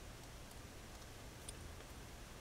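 A few faint small clicks over quiet room tone as a plastic pin header is fitted onto the NRF24L01 module's metal pins by hand, the clearest about a second and a half in.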